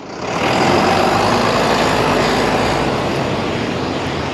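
A large road vehicle passing close by: a loud swell of engine and tyre noise that builds within the first half second and then slowly fades away.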